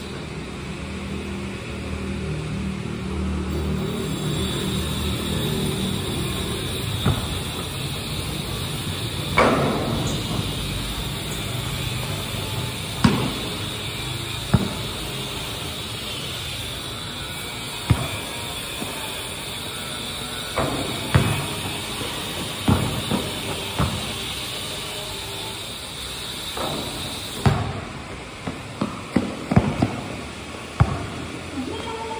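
A basketball bouncing and thudding on a concrete court, with single scattered thuds and a quick run of bounces near the end, over a steady background hiss.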